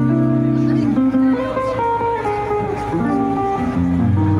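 Live jazz trio: an archtop electric guitar plays melodic single-note lines over sustained double bass notes.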